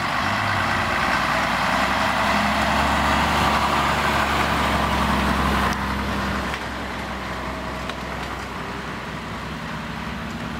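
Vintage Scania truck's diesel engine running as the truck drives slowly past close by. It is loud for the first few seconds, then drops off about six seconds in as the truck moves away.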